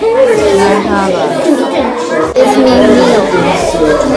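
Children's voices talking over one another, with chatter echoing in a large room.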